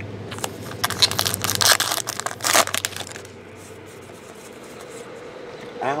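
Crinkling and crackling of baseball cards and pack wrappers being handled, a cluster of sharp crackles over the first three seconds, then only a low steady hum.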